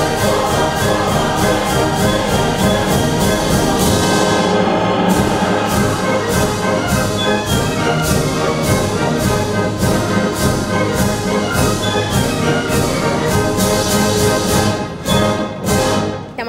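Orchestral opera music with brass over a steady, driving percussion beat of about three strokes a second, thinning out shortly before the end.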